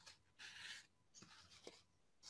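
Faint rustle of a paper towel rubbed along thin chalk-weathered wood strips to wipe off the excess chalk, about half a second in, followed by a couple of light ticks.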